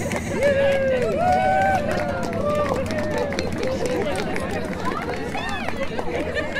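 A crowd of people talking and calling out over one another: a hubbub of many overlapping voices, with no single voice clear.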